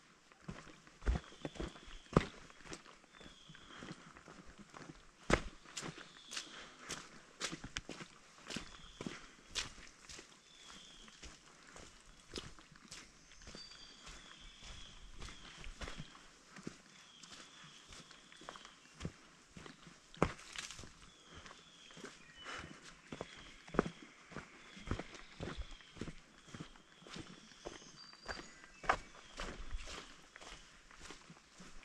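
Footsteps on a dirt forest trail strewn with dry leaves and twigs, irregular steps with occasional sharper crunches. A short high call repeats every second or two behind them.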